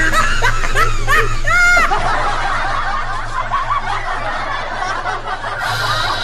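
Laughter: high, snickering laughs for about two seconds, then many overlapping laughing voices like a laugh track.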